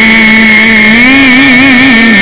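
A man's voice chanting a Quranic verse in drawn-out melodic style, holding one long loud note that wavers in pitch and lifts a little about a second in.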